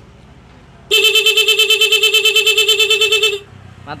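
Scooter's electric disc horn sounding through a stutter (intermittent) relay module: one blast of about two and a half seconds, starting about a second in, chopped into rapid even pulses, about eight a second. The stuttering beep is the module's intended effect, showing that it is wired correctly.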